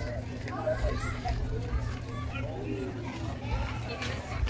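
Background voices of children playing and people talking, scattered short calls and chatter over a steady low hum.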